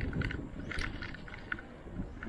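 Wind on the microphone and low road rumble from a bike moving along a concrete road, with light scattered clicks and rattles.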